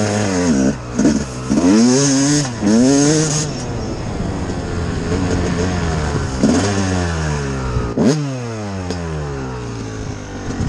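Dirt bike engine under way, revving up and dropping off several times in quick succession as the rider works the throttle and gears, then holding steadier before a sharp rev blip about eight seconds in.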